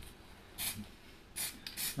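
Aerosol spray can hissing in three short bursts about half a second apart, dusting a thin coat of primer onto a brake disc.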